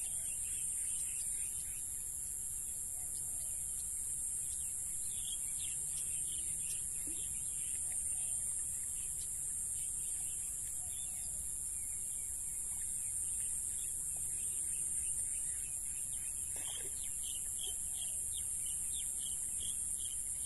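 Steady high-pitched chorus of insects with birds chirping now and then, the chirps busiest about a quarter of the way in and again near the end, over a low steady rumble.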